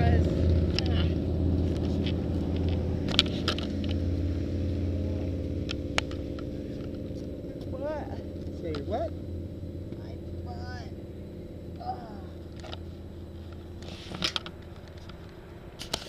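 Motorcycle engine running steadily, its low hum fading gradually, with a few sharp clicks and brief faint voices.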